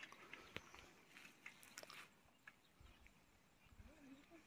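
Near silence: faint outdoor ambience with a few faint, scattered clicks.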